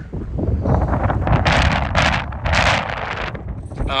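Wind buffeting the microphone: a dense low rumble throughout, with several louder gusts of hiss in the middle.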